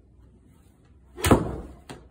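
A golf club striking a ball off a hitting mat: one sharp, loud crack about a second in, a well-struck shot, followed by a fainter click about half a second later.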